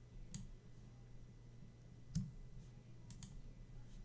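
A few faint computer mouse and keyboard clicks: four sharp clicks, the loudest about two seconds in and two close together near the end, over a low steady hum.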